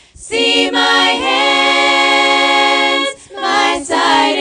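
Female vocal group singing a cappella in harmony, holding long chords. The singing breaks off briefly just after the start and again about three seconds in.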